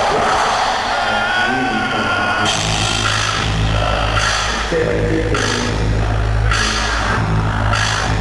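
Live ska-reggae band playing in concert. About two and a half seconds in, heavy bass and drums come in, with a bright accent on the beat a little more than once a second.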